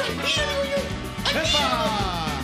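Upbeat children's pop song about a cat, with a voice singing over the band and, about a second in, a drawn-out cat-like 'meow' that rises and then slides down in pitch.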